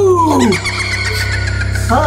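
A man's cry sliding down in pitch, followed by a shrill warbling sound, over a steady low drone of eerie background music.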